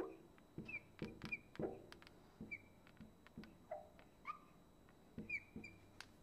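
Marker squeaking on a glass lightboard as it writes: a string of short, faint squeaks with a few light taps.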